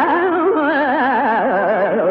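Carnatic violin answering in a raga Bilahari alapana: a solo melodic line whose notes shake in wide, fast gamaka oscillations.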